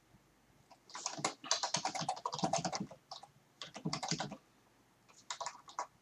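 Computer keyboard typing in three bursts of keystrokes with short pauses between them: a longer run about a second in, a short one around the middle, and another near the end.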